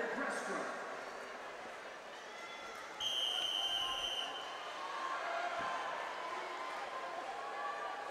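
Background crowd chatter in a swimming arena. About three seconds in, one long, steady, high-pitched referee's whistle blast sounds for a little over a second, the signal for swimmers to step up onto the starting blocks.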